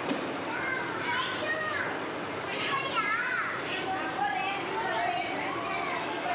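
A crowd of young children at play: many high voices chattering and calling over one another at once, without a break.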